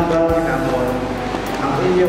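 A man's voice singing or chanting slowly in held, stepped notes over a microphone and loudspeakers.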